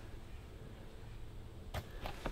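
Faint outdoor background hiss, broken about a second and three quarters in by one brief, sharp swish.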